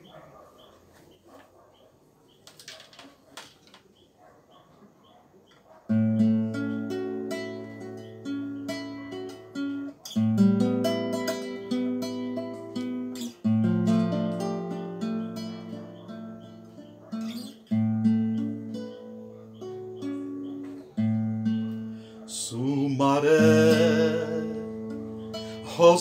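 After about six seconds of quiet, a classical guitar starts playing strummed chords, the introduction to a song, with a new chord every second or two. Near the end a man's singing voice comes in over the guitar.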